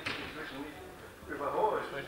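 Speech only: a voice talking, quieter in the first second and louder again in the second half.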